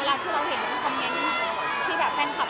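A woman speaking Thai into a cluster of microphones, with crowd chatter in the background.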